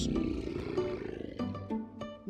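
A lion roar sound effect fading out over the first second or so, with background music underneath.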